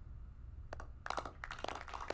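A run of faint, irregular clicks and crackles, starting about two-thirds of a second in.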